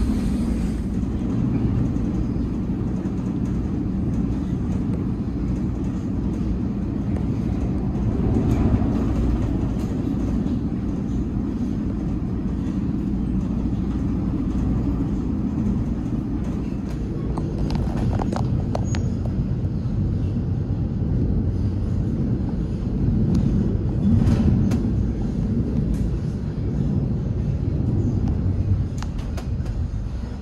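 Eurotunnel Shuttle train running through the Channel Tunnel, heard from inside a car-carrying wagon: a steady low rumble of the wheels and wagon, climbing the gradient toward the UK end. A few short clicks and creaks come from the wagon in the middle of the run.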